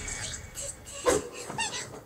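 A young woman's voice whimpering in pain with short, high, wavering cries of "ouch".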